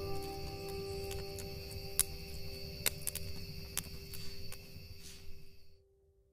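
The song's last sustained chord ringing out and fading away, with steady high tones over it and a few sharp clicks, cutting off to silence near the end.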